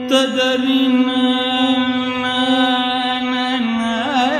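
Carnatic classical concert music: a male voice holds one long, steady note, stepping down slightly in pitch shortly before the end.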